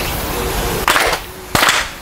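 A group of worshippers clapping their hands twice, the kashiwade claps of Shinto prayer, about two-thirds of a second apart and each slightly ragged as the claps don't land exactly together.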